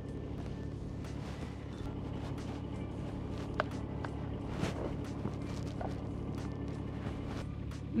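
Mini excavator's diesel engine idling steadily, with a few light metallic clicks from a hitch pin being worked through the H-link about halfway through.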